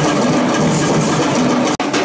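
A troupe of large metal-shelled drums beaten with sticks, many drummers at once in a loud, dense, continuous roll. The sound drops out for an instant near the end, then the drumming resumes.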